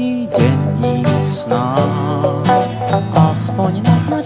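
Early-1980s pop song playing an instrumental passage between sung lines, with a rhythmic strummed accompaniment under a melody.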